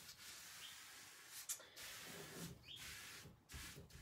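Faint rubbing of a scrunched cling-film pad over rice paper on a wooden cabinet door, in a few short strokes, smoothing out wrinkles.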